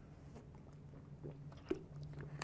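A man drinking water from a plastic bottle: faint swallowing and mouth sounds, with one short click near the end.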